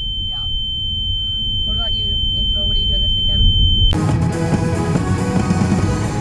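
Low rumble of a moving car heard from inside the cabin, with faint voices and a steady high-pitched whine. About four seconds in the whine stops and music starts abruptly, louder than the rumble.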